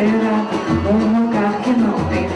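Live samba: a woman singing into a microphone, with a small band and hand percussion.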